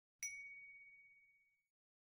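A single bright electronic ding that starts sharply about a quarter second in and rings out, fading over about a second and a half. It is an approval chime, marking an example as correct.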